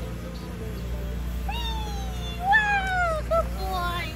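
A Doberman whining: two long, high, falling whines about a second and a half and two and a half seconds in, then a couple of short ones.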